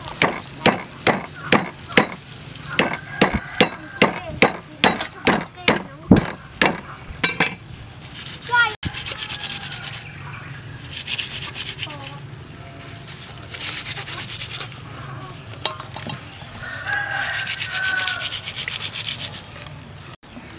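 Cleaver chopping on a wooden cutting board, about two sharp strokes a second for the first eight seconds. Then rubbing and rustling as hands work lemongrass stalks into a raw whole chicken in a metal bowl.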